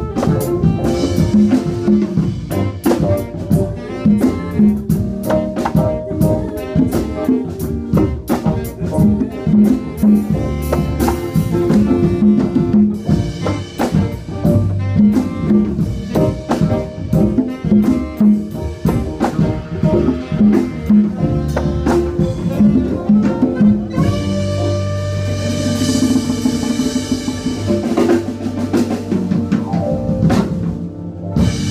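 A live band playing, with drum kit and percussion prominent: rapid drum strikes over sustained instrument notes. About 24 seconds in, the drumming thins out and long held chords take over.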